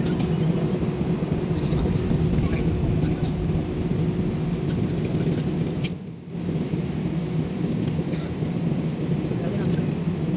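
Jet airliner cabin noise during taxi: a steady engine hum heard from inside the cabin, with a brief drop in level about six seconds in.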